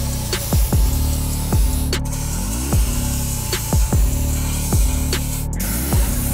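Compressed air hissing steadily from a blow gun as it blows debris out of a bug zapper's grid, cutting out briefly near the end. Under it runs electronic background music with a heavy bass beat.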